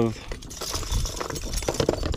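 Metal-hooked lures, bucktails and spinnerbaits, clinking and rattling against each other as a hand rummages through a plastic tackle box. It is a quick, uneven run of small clicks and rustles.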